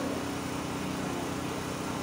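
A steady low hum of an engine running at idle, with an even fast pulsing.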